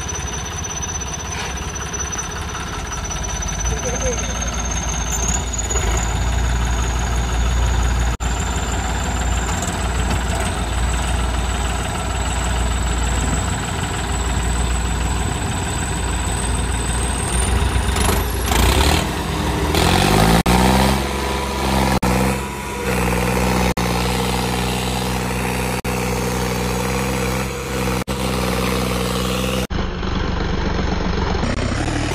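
John Deere 5210 tractor's diesel engine working hard under heavy load as it strains to drag a stuck, loaded trolley on a chain, with a thin high whine slowly climbing in pitch over the first seventeen seconds. About twenty seconds in the engine note changes to a steadier, more clearly pitched drone that holds to the end, by when the tractor's front wheels are lifting off the ground.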